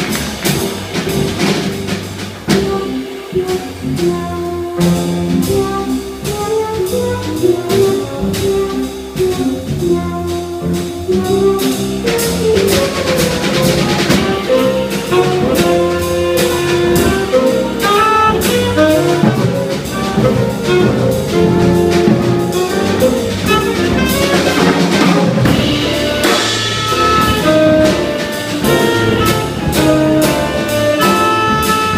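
Small jazz band playing live: saxophone carrying the melody over keyboard, bass and a drum kit with busy cymbal work, growing a little fuller in the second half.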